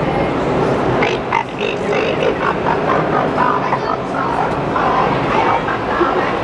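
Crowd hubbub in a large, echoing exhibition hall: a steady wash of noise with indistinct voices breaking through.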